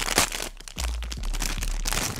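Thin clear plastic packaging bag crinkling and crackling in irregular bursts as it is handled and peeled off a small vinyl toy figure.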